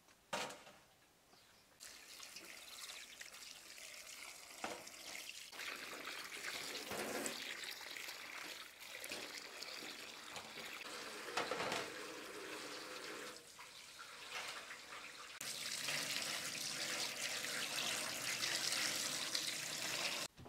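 Water running from a tap into a stainless steel sink as food is rinsed under it, ending with chicken liver in a metal colander under the stream. The running grows louder about fifteen seconds in.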